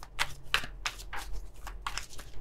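A deck of tarot cards being shuffled by hand: a string of short, irregular card flicks and slaps.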